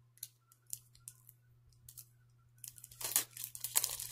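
Packaging of a circular knitting needle being handled: a few light clicks, then louder crinkling and rustling from a little under three seconds in.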